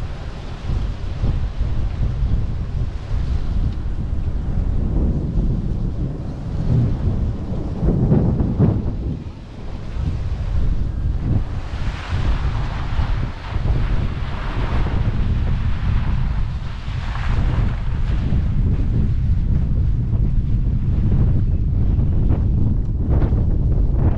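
Wind buffeting the microphone of a camera mounted on the outside of a moving vehicle: a dense low rumble that swells and eases, with a brief lull about nine seconds in.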